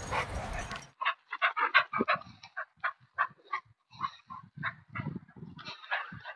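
A dog making a series of short, irregular sounds.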